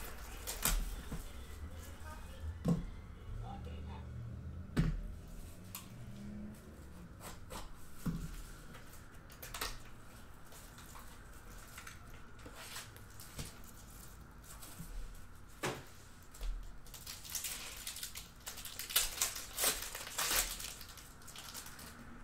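Upper Deck SP Game Used hockey card pack being torn open and its cards handled: crinkling and tearing of the pack wrapper with scattered taps and clicks, busiest a few seconds before the end.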